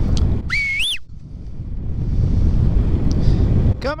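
Wind rushing over the microphone of a paraglider in flight, a steady low rumble that eases off briefly about a second in. Just before that comes one short whistle that rises in pitch and drops away. Near the end a man starts shouting.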